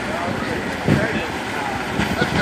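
FDNY fireboat's engines running at idle close by, a steady rumble, with a brief shout from a distant voice about a second in.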